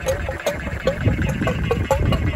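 Whale Gulper 12-volt diaphragm waste pump running with a low steady hum, sucking rinse water through its hose, with short gurgling chirps about three or four times a second. This is the pump being flushed clean of sewage after a tank pump-out.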